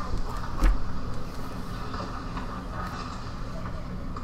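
A movie soundtrack playing through an LG GA6400 LED TV's built-in speakers at maximum volume: steady noise with one low thump a little under a second in.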